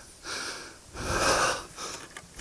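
A man breathing hard into a helmet-mounted microphone: two long, heavy breaths, winded from the effort of lifting a dropped heavy motorcycle out of sand.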